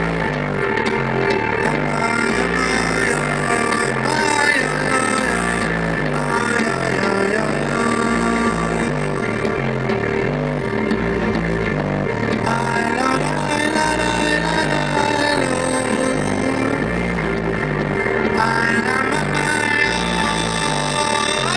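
Live band music: electric guitar and other pitched parts over a steady, repeating bass line.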